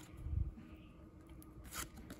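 Trading cards being handled, the front card slid across the stack: a soft low thump about half a second in and a short, light scrape of card on card near the end.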